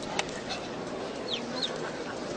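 Young crow giving two short falling chirps in quick succession as it is hand-fed, over steady background noise, with a light click near the start.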